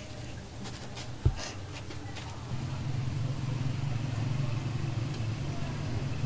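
Low steady background hum, with one sharp knock a little over a second in.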